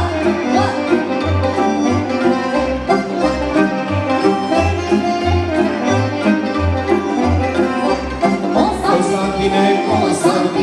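Live band playing fast instrumental Romanian folk dance music for a hora, with a busy melody over a bass line that bounces between two low notes on a steady beat.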